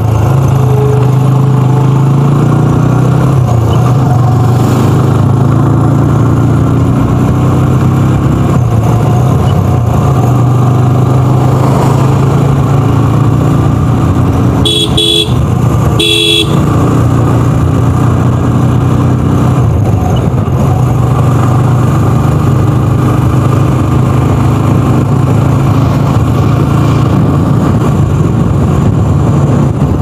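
A motorcycle engine running steadily while riding along a hill road. About halfway through come two short horn beeps, a second apart.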